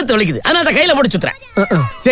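A person's voice in a string of short, high, rising-and-falling wails, ending with a long falling wail near the end.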